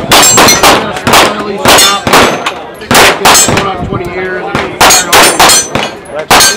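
9mm pistol shots on an outdoor range, fired in quick irregular strings: about a dozen sharp reports, several followed by short high metallic pings. Some shots come in pairs a third of a second apart.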